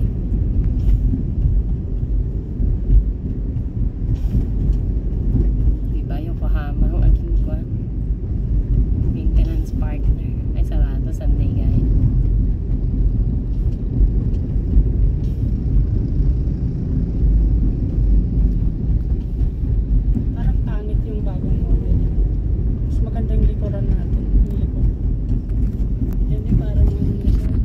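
Steady low rumble of engine and tyre noise heard from inside a moving car's cabin.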